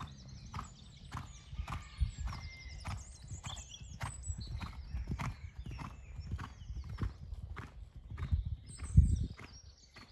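Horse cantering on a sand arena: rhythmic hoofbeats and stride noise throughout, with one louder thud about nine seconds in.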